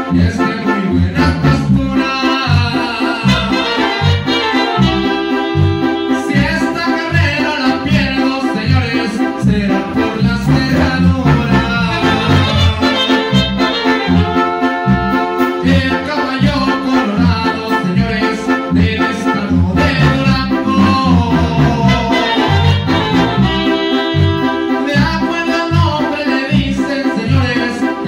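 A small live band with saxophone, trombones, a drum kit and an electric keyboard playing a Latin tune with a steady, pulsing beat, the horns holding sustained lines over it.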